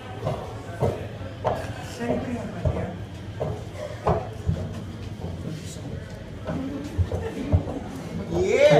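Indistinct voices of people talking in a live venue, over a steady low hum, with a few sharp knocks.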